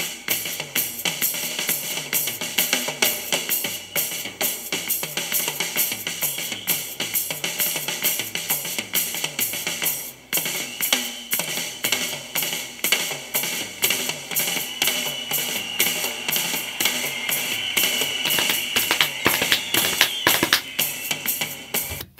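Live rock drum kit solo: fast, continuous rolls around the toms and snare with cymbals and a steady bass drum, in a triplet feel. There is a brief break about ten seconds in, and a cymbal rings out through the later part.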